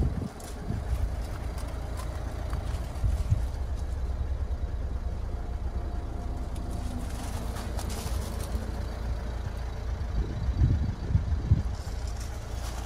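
Mercedes-Benz Vito van's diesel engine idling steadily, heard from inside the cab, with a few soft bumps near the end.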